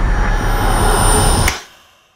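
A loud, dense cinematic trailer sound-design rush with a rumble underneath, which cuts off abruptly about one and a half seconds in and drops to silence.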